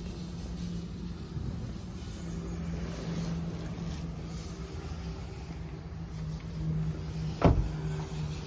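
A steady low hum in a car, with one sharp thump near the end.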